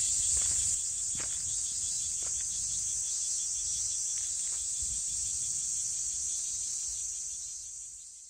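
A steady, high-pitched insect chorus like chirring crickets, over a faint low rumble with a few soft clicks. It fades out near the end.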